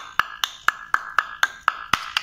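Steady tapping on a hardened piece of latex-modified cement mortar, about four sharp knocks a second, each with a short ring. This is a knock test of how hard the cured mortar is.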